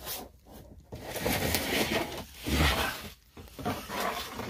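Scraping and rustling of a plastic tray being pulled out over the floor of a cat feeding box and lifted away, loudest about two and a half seconds in with a low bump.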